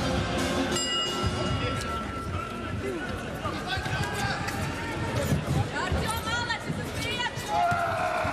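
Boxing arena ambience: crowd noise and background music, with a clear ringing tone starting about a second in and shouted voices near the end.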